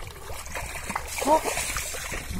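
Shallow muddy water splashing and sloshing as bare feet wade and kick through it.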